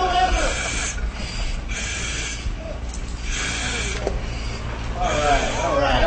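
Hard breathing from exertion through a firefighter's breathing-apparatus mask, each breath a hiss about every second and a half. A muffled voice is heard near the start and again near the end.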